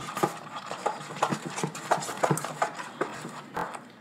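Homemade slime being kneaded and pulled by hand in a bowl, with irregular sticky clicks and squelches, several a second.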